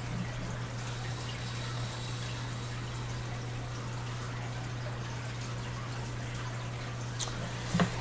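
Quiet room tone: a steady low hum with a faint hiss beneath it and no distinct events.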